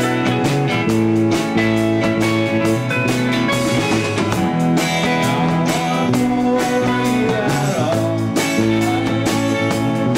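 Rock band playing live: electric guitars ringing out chords over a drum kit keeping a steady beat.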